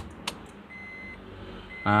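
Ignition key of a 2015 Honda Brio clicking into the on position, then the car's warning chime beeping twice, about a second apart, with the engine not yet running.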